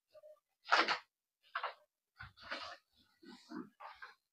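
Sheets of paper rustling in a few short bursts as pages of a document are turned and handled, the loudest just under a second in.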